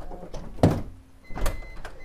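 A minivan's sliding door clunking and knocking as its handle is pulled, the loudest knock about two-thirds of a second in and another about a second later: the door is jammed and won't open, its inside torn apart by a black bear. A thin high electronic beep comes and goes in the second half.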